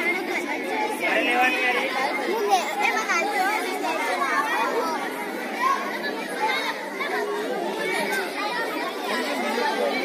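Many children talking over one another in a steady, overlapping chatter, with no single voice standing out.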